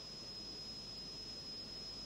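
Faint steady hiss of an old film soundtrack, with a thin, steady high-pitched whine running through it.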